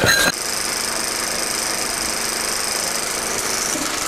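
A steady mechanical running noise, like a small motor, with a constant high hiss, cutting in abruptly just after the start and holding even.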